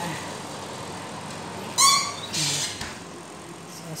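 Baking tray and oven door being shut into a built-in oven: a short high-pitched metallic squeak about two seconds in, the loudest sound, then a brief rush and a soft low thud as the door closes.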